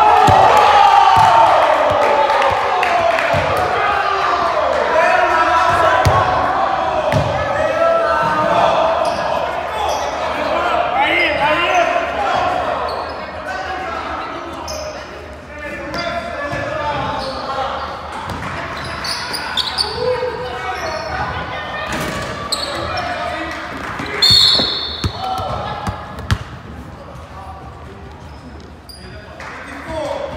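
Indoor basketball game: overlapping voices of players and onlookers, loudest in the first few seconds, with a basketball bouncing on a hardwood floor and scattered knocks, all echoing in a large gym.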